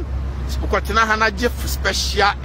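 A man's voice talking in short phrases over a steady low rumble of city traffic.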